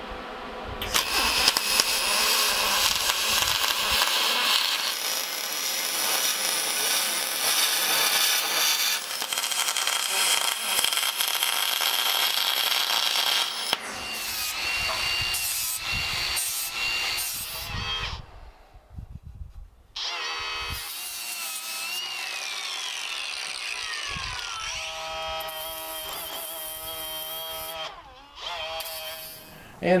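Spool-gun MIG welding on aluminum tubing: a steady crackling hiss for the first thirteen seconds or so. Then an angle grinder with a flap disc grinding the aluminum welds in several passes, with a short break and a whine that falls in pitch as the grinder winds down.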